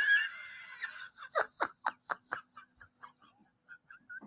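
A woman laughing: one long, breathy laugh, then short quick pulses of laughter, about four a second, that die away after about two and a half seconds.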